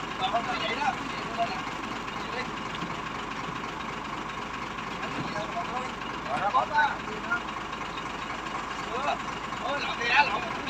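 An engine idling steadily, with men's voices talking now and then.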